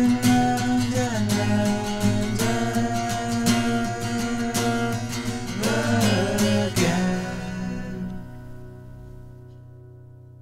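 A guitar-accompanied song reaching its end, with a sung line over strummed guitar; a final chord is struck about seven seconds in and left to ring, fading out.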